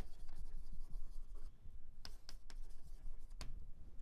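Chalk writing on a blackboard: faint scratching with several light, sharp taps as letters are formed.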